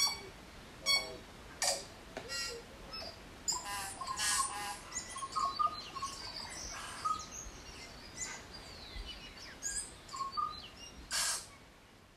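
Birds chirping and calling: a scattered run of short chirps and whistled notes that fades out near the end.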